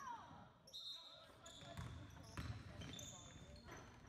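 Faint basketball game sounds in a gym: a ball bouncing on the hardwood court and short sneaker squeaks, under distant voices.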